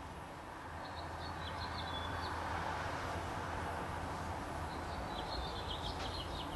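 Steady background noise with faint, high bird chirps, a short run about a second in and another near the end.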